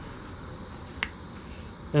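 A single short, sharp click about halfway through, over a low steady hiss.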